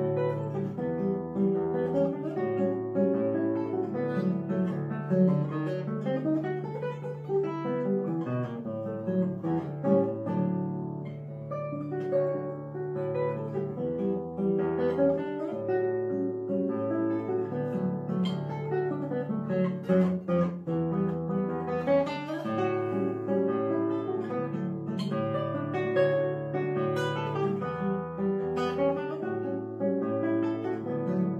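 Solo nylon-string classical guitar played fingerstyle: a lively piece with a bass line under melody notes and a few sharp chords.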